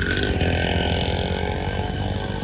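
Motorbike engine starting to rev abruptly as the bike pulls away, loud at first and slowly growing quieter.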